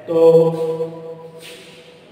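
A man's voice drawing out one word, "to…", on a steady held pitch for about a second before it fades.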